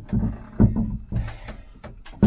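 A few dull knocks and bumps as an anchor windlass gearbox is pushed and manoeuvred up against its mounting base plate, not seating in place.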